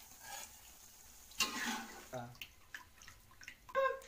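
Quiet draining of fried potatoes in a wire-mesh strainer over a wok: hot cooking oil dripping, with a few light clicks of the metal strainer. A short voiced 'uh' and brief murmurs are heard over it.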